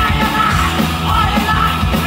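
Live rock band playing loud, with electric guitars, bass and drums, and the singer yelling into the microphone.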